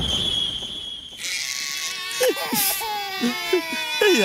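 A man crying in an exaggerated, wailing way, with drawn-out falling cries from about two seconds in. A hiss with a thin high tone fills the first second.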